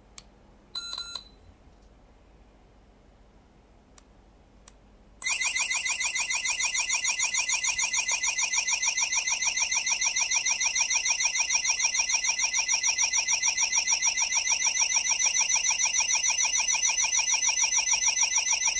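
AWOW smart security hub's built-in alarm siren set off from its key fob remote. A short high beep sounds about a second in, then about five seconds in the siren starts and keeps sounding a loud, fast, high-pitched warble.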